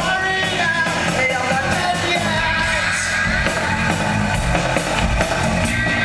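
Live post-punk rock band playing, with guitar, bass and drums under a male lead vocalist singing and yelling into a microphone.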